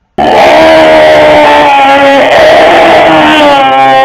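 A man's loud scream: one long yell held on a steady pitch that starts abruptly and lasts about four seconds.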